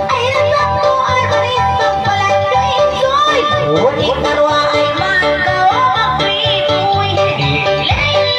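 A woman sings into a microphone over loud backing music with a steady pulsing beat. Her voice slides and ornaments the notes, most clearly around the middle and near the end.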